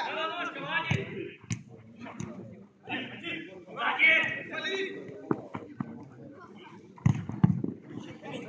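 A football being kicked on artificial turf: several sharp thuds, two early and a cluster near the end, amid players' shouts and calls.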